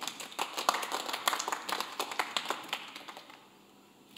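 Applause: many people clapping, starting at once after the award is called and dying away over about three seconds.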